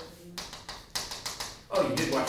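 Chalk tapping and scraping on a chalkboard as a word is written in a run of quick strokes; a voice begins near the end.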